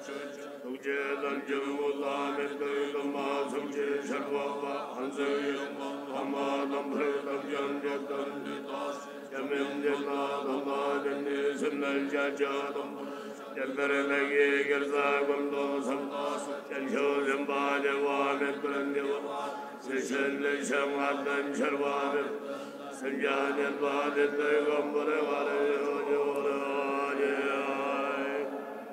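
Buddhist monks chanting a prayer together in low, steady voices, in long phrases with short breaks between them.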